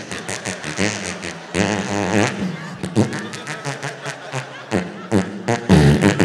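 A man blowing fart-like raspberry noises with his mouth into a microphone, a run of rapid buzzy bursts, in imitation of a party noisemaker horn being tested.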